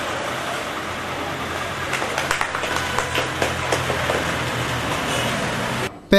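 Steady background noise of a crowded shop interior with a low hum running under it, and a few faint clicks or taps between about two and three and a half seconds in.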